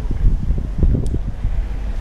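Wind buffeting the camera's microphone: an uneven, gusty low rumble.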